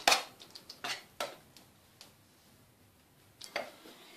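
Short clicks and light taps from fingers spreading and pressing a soft filling into a baking pan: a handful in the first second and a half, then quiet, then a couple more near the end.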